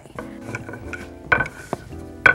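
Wooden rolling pin knocking twice against a wooden board while pasta dough is rolled out, the first knock about a second and a half in and the louder of the two. Soft background music underneath.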